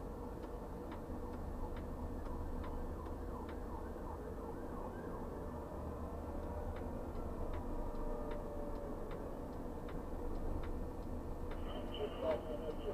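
Steady low hum and a held tone from a Recom Moritsch 265 luffing tower crane's drives, heard inside its cab. Over it runs a regular clicking about twice a second, which pauses for a few seconds midway.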